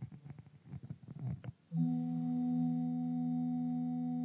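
Faint indistinct sounds, then a steady held musical chord of several pitches starts just under two seconds in. It holds level without fading.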